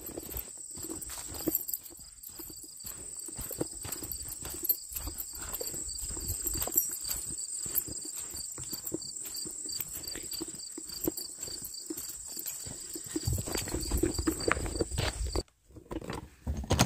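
Footsteps of someone walking steadily across grass and gravel, about two steps a second, over a steady high chirping of insects. The steps stop briefly near the end.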